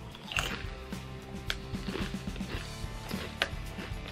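Ketchup potato chips crunching as they are chewed, with a few sharp crunches and some rustling of the chip bag, over background music.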